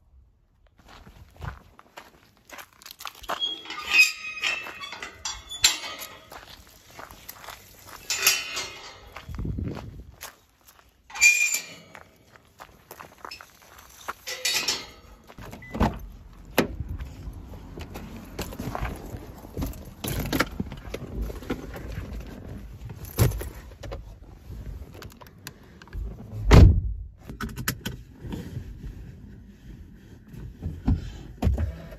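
Car keys jingling and footsteps on gravel, then the outside handle of a car door pulled and the door opened about halfway through. A loud, heavy thud of the car door shutting comes a few seconds before the end.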